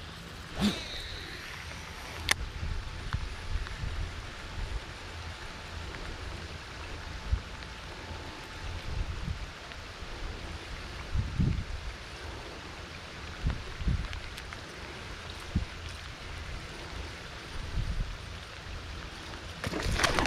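Steady rain falling on a pond, a constant hiss, with low rumbles coming and going on the microphone and a single sharp click about two seconds in.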